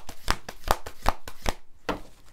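Tarot cards being shuffled from hand to hand, a run of crisp slaps about five a second that pauses about a second and a half in, with one more slap near the end.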